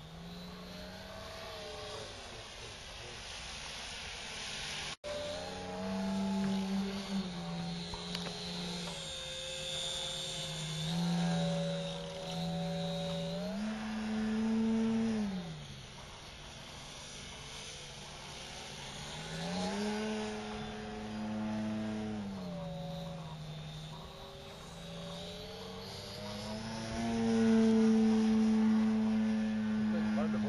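Model Pitts biplane's engine running in flight, its pitch stepping and gliding up and down over and over as the throttle is worked, highest and loudest near the end. The sound cuts out for an instant about five seconds in.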